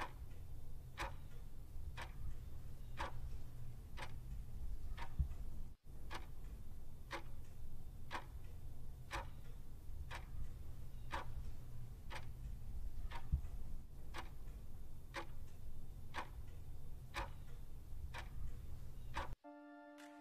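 Clock ticking sound effect, one tick a second over a faint steady low hum, counting down the remaining seconds. The ticking stops just before the end and a short tone sounds.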